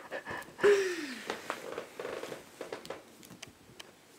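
A person's soft, breathy vocal sounds: a short falling tone about half a second in, then brief murmurs and light rustling that fade toward the end.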